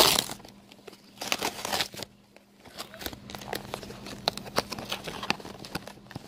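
Shipping packaging being opened by hand: a loud rustle at the very start, then scattered crinkling, scraping and small clicks of paper, plastic and cardboard.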